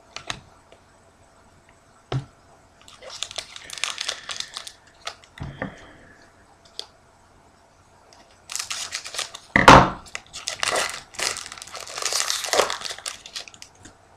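Foil trading-card pack wrapper being cut with scissors, then crinkled and torn open by hand, in several spells of rustling. The longest and loudest spell comes in the second half, and a sharp thump lands near the middle, the loudest sound here.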